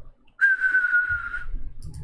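A single high whistled note, held for about a second and sinking slightly in pitch.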